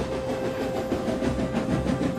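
A steam tank engine puffing as it hauls a goods train, with the wagons clattering steadily over the rails and a single steady high note held for about two seconds.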